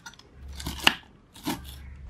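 Kitchen knife chopping fresh spinach stems on a wooden cutting board: two crisp crunching cuts, the first just under a second in and the second about half a second later.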